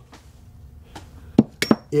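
A quick run of sharp metal clicks in the second half, one with a brief ringing, as the parts of a field-stripped Glock pistol, its recoil spring assembly and slide, are handled and knocked together.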